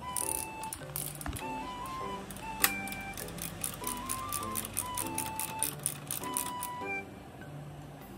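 Background music: a simple melody of short stepped notes over a low bass line, with light, evenly spaced ticking through the middle. One sharp click stands out about two and a half seconds in.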